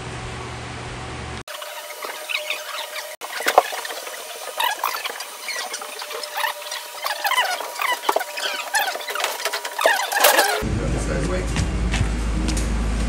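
Dense, rapid high-pitched squeaks and chirps with no low end, like voices and work noise sped up in time-lapse footage. They start abruptly about a second and a half in and give way near the end to a steady low hum.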